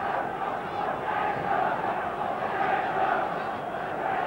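A large football stadium crowd: the steady din of thousands of voices from the stands during open play.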